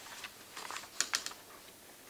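Sheets of paper being handled and turned close to a desk microphone: a run of light crackles and clicks, with a few sharper ones about a second in.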